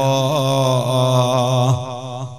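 A man's voice chanting into a microphone, drawing out one long melodic note that wavers slightly in pitch and breaks off near the end.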